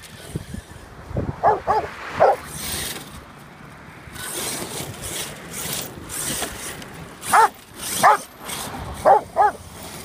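Rottweiler barking in short, sharp barks: three close together about a second and a half in, then four more in the second half. In between, an RC car's motor whirs and its tyres scrabble on loose dirt.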